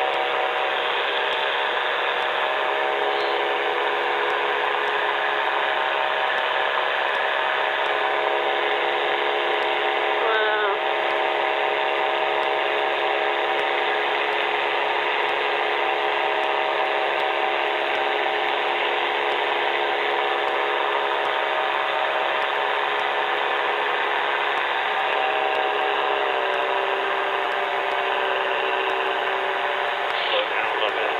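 Steady in-flight drone of the Revo trike's engine and pusher propeller in cruise: a set of even, unbroken tones. About 25 seconds in, the pitch steps slightly lower as the power is eased back a little. A brief wavering sound comes near the middle.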